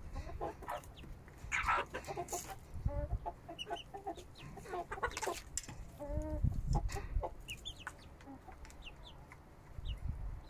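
Chickens clucking while they feed, with short high peeps, typical of chicks, scattered throughout and a run of clucks in the middle.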